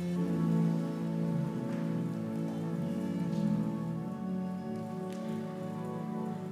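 Organ music: slow, sustained chords, each held for a second or more before moving to the next.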